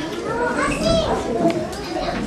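Young children's voices chattering and calling out over one another.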